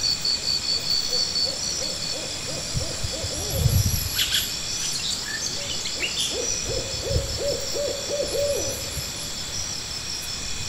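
Two quick runs of short hoot-like calls from an unseen animal, with a low thump between them, over steady high insect-like chirping and buzzing.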